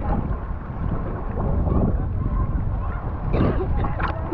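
Water sloshing and lapping around an action camera held at the surface, heard as a heavy, uneven low rumble with wind on the microphone. There is a brief splash about three and a half seconds in.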